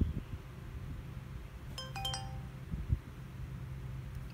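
Magicsee Z2 Pro action camera's startup chime: a short electronic jingle of a few notes from its small built-in speaker, about two seconds in, as the camera finishes booting into live view. Dull knocks of the camera being handled come before and after.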